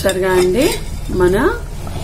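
A ladle stirring a thick curry in an aluminium pot, with metal scraping and clinking against the pot.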